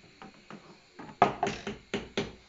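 A few sharp kitchen knocks and clatters: a spoon against the saucepan and jars or bottles set down on the worktop, the loudest just over a second in, after some faint clicks.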